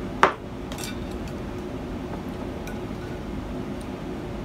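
Tableware clinking: one sharp clink just after the start, then a few faint light clicks, over a low steady hum.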